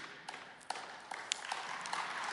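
Light, scattered audience applause starting up: a few separate claps at first, thickening into a low patter of clapping toward the end.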